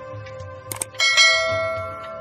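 A click sound effect, then about a second in a bell-like notification ding that strikes suddenly and rings on, fading. It is the sound effect that goes with the subscribe button being clicked and the notification bell icon appearing.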